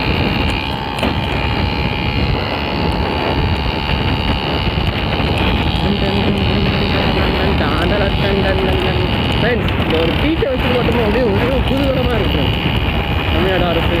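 Steady wind rush on the microphone and the drone of a small 50cc two-wheeler engine at cruising speed. From about six seconds in, a man hums a wavering tune over it without words.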